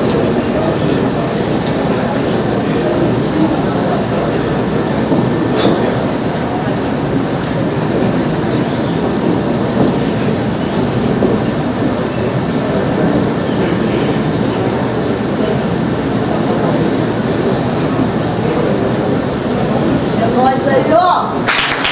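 A large audience applauding steadily, with voices mixed into the clapping.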